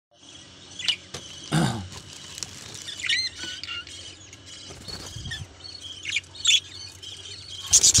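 Small pet parrots chirping and giving short whistled calls in a cage with clay-pot nests, with knocks and rattles from the wire cage door. Near the end comes a loud flurry of wing flaps as a green bird flies up.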